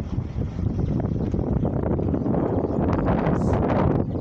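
A car rolling slowly over broken asphalt and loose grit, making a rough tyre rumble with crackling, while wind buffets the microphone. The noise grows gradually louder.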